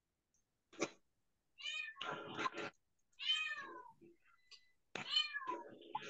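Three high-pitched animal cries, each falling in pitch, about a second and a half apart, picked up through a participant's open microphone on a video call.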